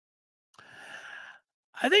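A man's breath into a close headset microphone: one soft, hissy breath or sigh lasting just under a second, before he begins speaking near the end.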